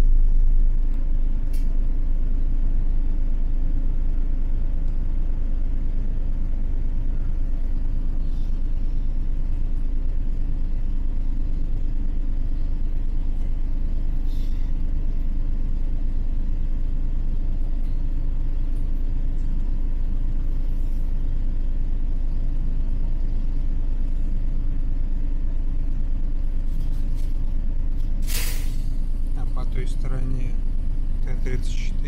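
Inside a LiAZ-4292.60 city bus on the move: steady low rumble of its diesel engine and running gear, with a few light clicks and rattles. Near the end comes a short, sharp hiss of compressed air from the air brakes.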